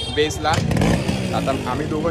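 A motorcycle engine running close by, coming in loud about half a second in and holding, over a low rumble of street traffic.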